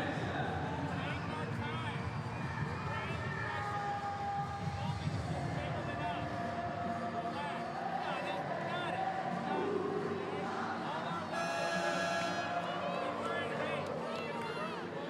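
Arena crowd chatter with background music playing, and a short buzzer-like tone lasting about a second near the end.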